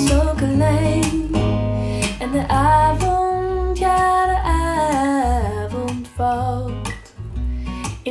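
A female-sung Dutch pop song with guitar and bass, played over home-built stand-mounted monitor speakers with Dayton DSA135 aluminium-cone woofers and picked up in the room. The singing dips briefly about six seconds in, then the song carries on.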